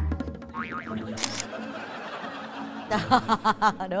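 Background music with comedic sound effects laid over it: a springy boing and a brief camera-shutter effect.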